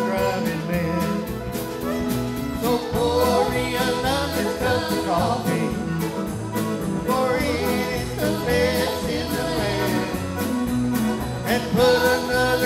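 Live country band playing an instrumental break in a truck-driving song, with drums, bass, guitars and fiddle keeping a steady beat under a melodic lead line.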